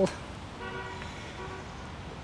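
A faint vehicle horn sounding once for about a second, a steady held tone.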